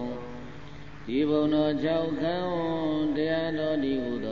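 A single voice chanting a Buddhist recitation in long held notes that glide gently up and down, with a brief quieter dip about a second in.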